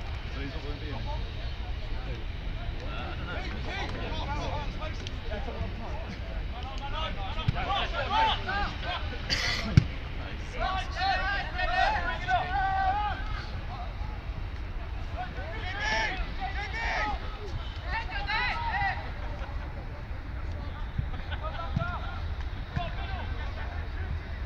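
Players shouting and calling to each other across a football pitch during play, strongest in two spells through the middle. A single sharp thud, the loudest sound here, comes about ten seconds in, over a steady low rumble.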